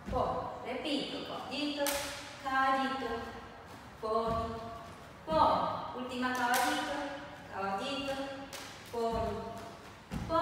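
A woman's voice vocalizing the rhythm of the step in wordless syllables, in short phrases with brief pauses between them, over a few light thuds of feet landing on a wooden floor.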